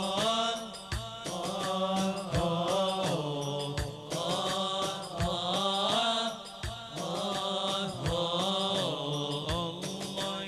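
Chanted singing in long, winding melodic phrases over a steady low drone, with a drum stroke about every one and a half seconds: traditional wedding chant music.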